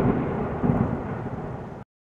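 A loud, low rumbling noise that fades steadily and cuts off abruptly near the end, with dead silence on either side, as at an edit between clips.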